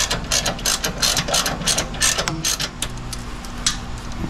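Ratchet wrench clicking in quick, irregular runs of several clicks a second as the bolt of a cable clamp on the frame is tightened; the clicking stops shortly before the end.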